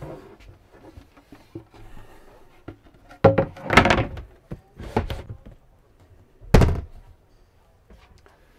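Several dull thuds and knocks inside a camper van, with one heavy thump about six and a half seconds in.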